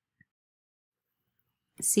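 Near silence with one faint, short click a fraction of a second in, then a woman's voice begins speaking near the end.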